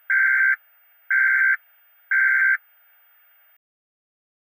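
Three electronic beeps at the same pitch, each about half a second long, one a second apart, like a countdown timer.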